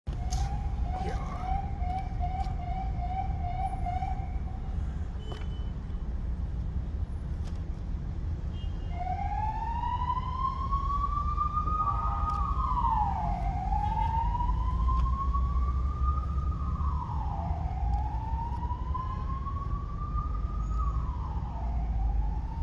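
An emergency vehicle siren wailing, its pitch rising slowly and dropping quickly in cycles of about four seconds, starting about nine seconds in. Before it, for the first few seconds, a faster pulsing tone, with a steady low rumble throughout.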